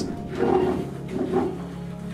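The hand-cranked winch of a Welin lifeboat davit turning under the load of the lifeboat as it is lifted off its chocks. It gives two or three short, pitched creaks.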